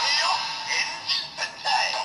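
DonBlaster transformation toy gun playing its transformation jingle through its built-in speaker: electronic music with a synthesized singing voice, thin with no low end, in short choppy phrases that stop at the end.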